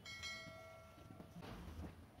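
A faint bell-like ring that starts suddenly and dies away over about a second and a half, followed by a brief low rumble.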